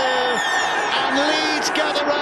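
The full-time hooter sounds as a steady high tone that fades out about one and a half seconds in, under men's voices shouting.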